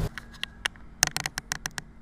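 A run of small, irregular sharp clicks and taps from gear being handled, thickest in the second half.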